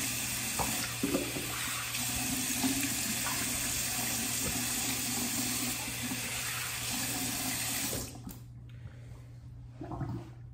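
Bathroom sink tap running steadily while water is splashed onto the face to rinse off shaving lather. The tap is turned off about eight seconds in.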